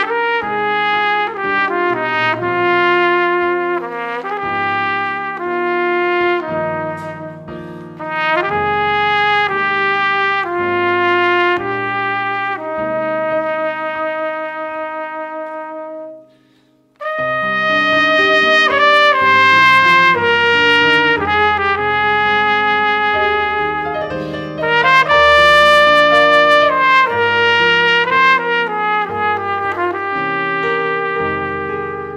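Solo trumpet playing a slow melody over digital piano accompaniment. A long held note about thirteen to sixteen seconds in breaks off into a brief pause, and then the melody starts again.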